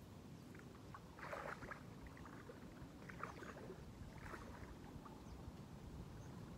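Faint water splashing from a person wading into shallow water, in three short spells over a few seconds.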